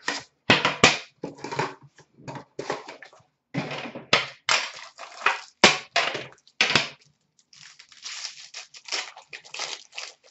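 Foil card-pack wrappers and trading cards being handled: irregular crinkling and rustling with a few sharp crackles, louder in the first seven seconds and softer after.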